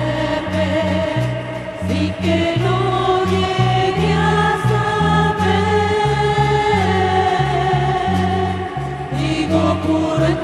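Church choir singing a hymn in long held notes, with instrumental accompaniment and a bass line that steps from note to note.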